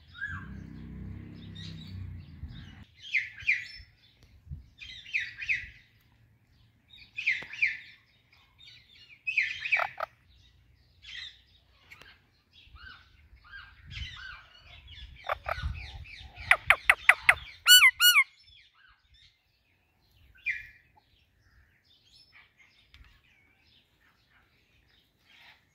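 Parakeets (an Indian ringneck and an Alexandrine) giving short chirps and squawks every second or two. About two-thirds of the way through comes a run of about six loud, rapid screeches.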